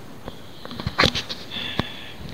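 A man breathing between sentences: a quick breath in through the nose about a second in, with a few small mouth clicks.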